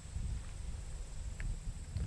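Low, steady rumble of wind on the microphone outdoors, with one faint tick about one and a half seconds in.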